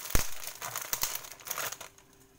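Vegetables sizzling in a covered pan, a steady irregular crackle, with one dull thump just after the start; the sizzle cuts off just before the end.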